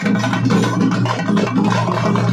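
A festival drum group playing barrel drums in a fast, dense rhythm of continuous strikes over a steady low drone.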